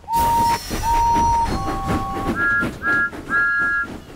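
Steam locomotive whistles from cartoon engines: two long single-note blasts, then a lower two-note whistle, then three short, higher two-note toots. Steam engines puff underneath.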